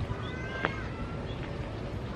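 A short, thin, high animal call lasting under a second, heard over steady outdoor background noise.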